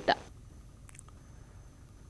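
A woman's last spoken word ends at the start, then near silence: faint background hiss with one small click about a second in.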